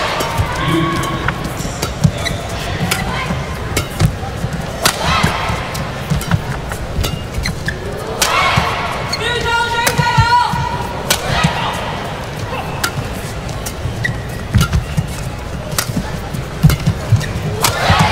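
Badminton rally: sharp cracks of rackets striking the shuttlecock at irregular intervals, with shoes squeaking on the court, one long squeak about ten seconds in, over a steady arena crowd.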